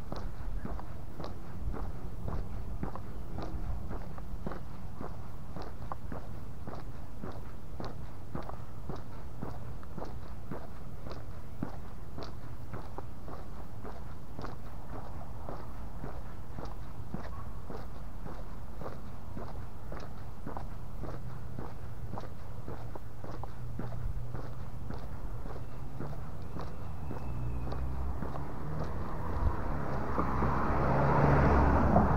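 Footsteps on a paved street at a steady walking pace, about two steps a second, over a low steady rumble. Near the end an approaching car grows louder.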